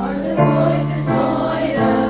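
Mixed SATB church choir singing a worship song in harmony over a recorded accompaniment track, holding sustained notes that change pitch every half second or so.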